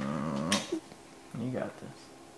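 Soft, low, wordless vocal sounds: a wavering hum that fades about half a second in, a quick sniff, then a second short low hum around a second and a half in.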